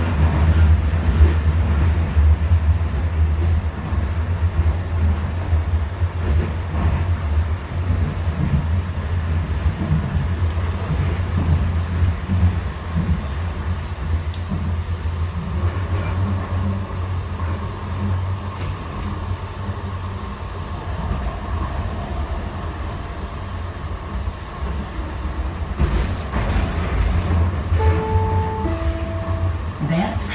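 Inside a Siemens U2 light-rail car running along the track: a steady low rumble of the motors and wheels on rail. Near the end a two-note descending chime sounds.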